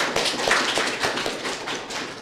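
Small audience applauding in a room, many quick, irregular claps that taper off near the end.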